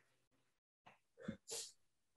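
Near silence, with a short, faint intake of breath about one and a half seconds in.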